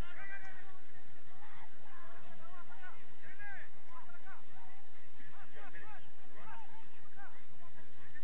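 Several voices calling out across a soccer pitch in short shouts, scattered through the whole stretch over a steady background hiss.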